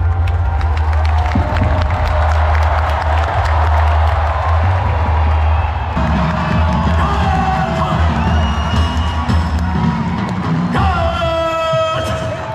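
Music with a heavy bass beat played over stadium loudspeakers, under the noise of a large cheering crowd. Near the end a single long, loud shout is held for about a second, rising slightly in pitch.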